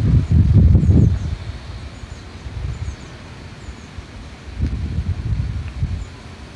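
Wind buffeting a phone's microphone outdoors: a low rumble, strongest for about the first second, dying down, then gusting up again near the end.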